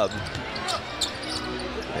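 A basketball bouncing on a hardwood court, several dribbles heard as short knocks over steady arena crowd noise.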